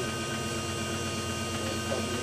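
Electric drive motor and ZF 5HP24 automatic gearbox of an EV-converted BMW 840Ci running steadily under test: a constant hum with several steady whining tones.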